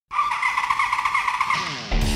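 Motorcycle engine at high revs, a loud steady high-pitched whine with fast pulsing, then its pitch sliding downward in the last half-second as the bike goes by.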